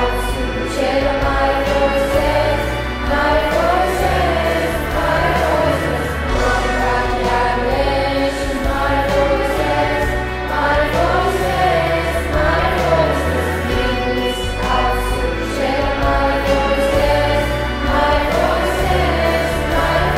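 Choral music: a choir singing long held chords over a slow-moving bass line.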